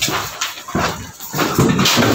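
Handling noise from a recording device being picked up and moved, with irregular rubbing and bumping on its microphone.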